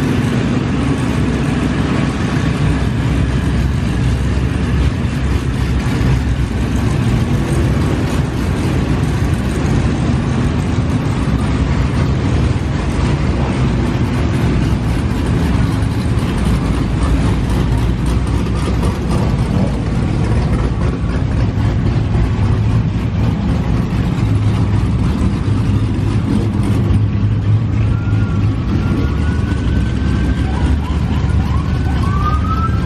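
A crowd of performance cars running and revving as they roll out, a steady loud engine din with heavy bass. Near the end a siren starts up with a rising wail.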